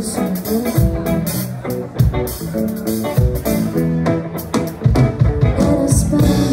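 Live band playing: electric guitars and bass over a drum kit, with regular drum and cymbal hits.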